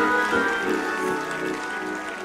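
Sustained instrumental chords, held steady and fading slightly near the end, over a haze of congregation noise.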